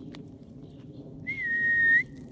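One long, steady whistled note starting a little over a second in and growing louder until it stops, a recall whistle to a dog.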